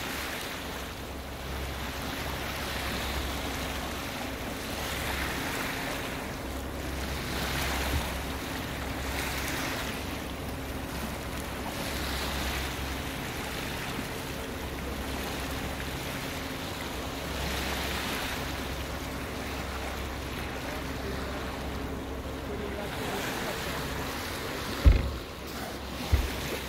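Wind and sea water washing past a yacht under way, swelling and easing every few seconds over a steady low hum. A single sharp knock near the end.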